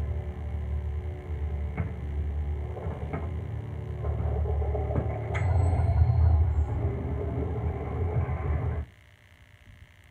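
Film soundtrack playing from a TV: a low, rumbling electronic score with sustained tones and a few faint clicks. It cuts off suddenly about nine seconds in as the Blu-ray playback is paused.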